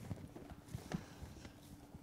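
A few faint, light knocks and handling sounds as a cardboard gift box is set down on a music stand.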